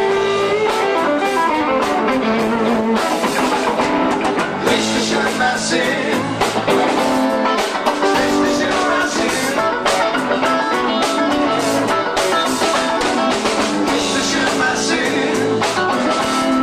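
Live rock band playing: electric guitars and bass guitar over a drum kit.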